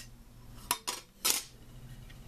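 Plastic front faceplate of a Tenergy TB6B charger being set down on a workbench: a few sharp clicks and clatters in the middle, three in all.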